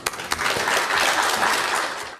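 Audience applauding in a conference hall: a few separate claps, then full applause from about half a second in.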